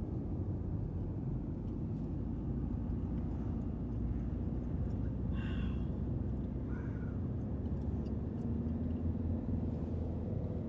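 Steady low road and engine rumble inside a moving car's cabin at highway speed. Two brief, higher-pitched sounds break in about halfway through.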